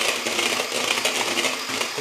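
Braun electric hand mixer running steadily, its beaters whirring and rattling through cream in a plastic bowl as the cream whips thick.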